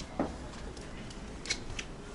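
A few light clicks, two sharp ones about a second and a half in, over a steady low room hum, with a short voice-like sound just after the start.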